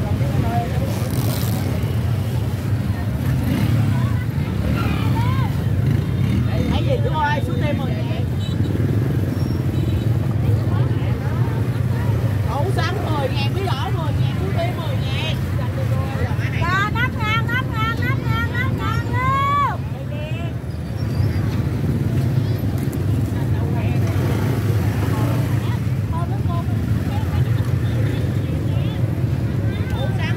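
Busy open-air produce market: scattered voices of vendors and shoppers talking over a steady low rumble, with one voice standing out loudly for a few seconds past the middle.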